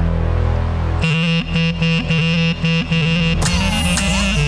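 Clarinet playing a melody with pitch bends over synthesizer keyboard backing. About a second in, the sustained chords give way to a quick, rhythmic passage.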